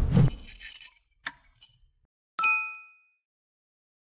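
Subscribe-button animation sound effects: a whoosh fading out at the start, a sharp mouse-click just over a second in, then a bright notification-bell ding about two and a half seconds in that dies away within half a second.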